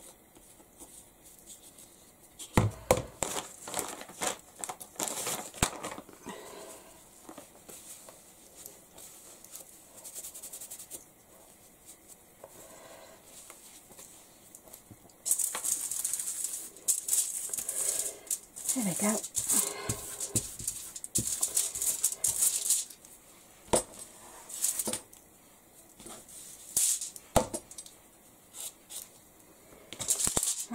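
Aluminium foil crinkling and a wipe rubbing over a stencil on a foil-covered craft mat, in a run of loud rustling strokes lasting several seconds midway through. Earlier there are some light taps and knocks.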